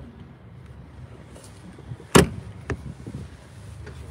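A fifth-wheel RV's exterior compartment door being handled: one sharp clunk about halfway through, followed by a lighter click about half a second later.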